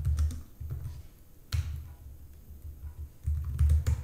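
Typing on a computer keyboard: irregular keystrokes, each a sharp click with a dull thud beneath it, coming in short runs with brief gaps.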